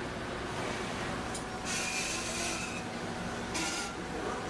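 Steady machinery noise of a shipboard core-splitting lab, with a rasping hiss for about a second near the middle and again briefly near the end.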